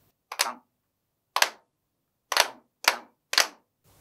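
Several people clapping their hands in unison, five claps in all. Two come about a second apart, then three quicker ones half a second apart: the 'tan, tan, tan-tan-tan' hand-clap rhythm of a body-percussion pattern.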